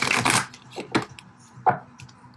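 Tarot deck shuffled in the hands: a brisk rustling burst of cards about half a second long, then three sharp taps as the cards are handled.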